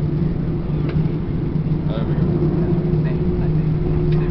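Airbus A321 cabin noise during the slow roll-out after touchdown: a steady drone from the engines at idle, with an even low hum.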